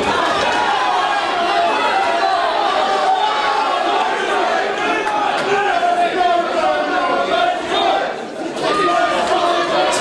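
Boxing crowd shouting and yelling, many voices at once, dipping briefly about eight seconds in.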